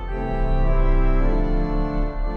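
Church pipe organ playing slow, sustained chords, moving to a new chord about two-thirds of a second in.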